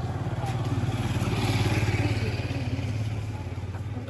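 Motorcycle engine running with a fast, even beat, growing louder toward the middle and then easing off.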